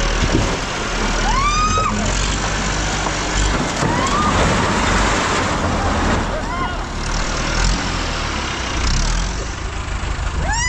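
A tractor engine running steadily under load, its front loader working at a house. Over it come three short, high wailing cries that rise and fall, about a second and a half, four and six and a half seconds in.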